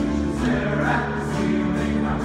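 Musical theatre number performed live: musical accompaniment with a group of voices singing together, at a steady level.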